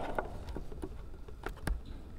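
Microphone handling noise: a few short clicks and bumps as a handheld microphone is handled and adjusted, over a low steady hum.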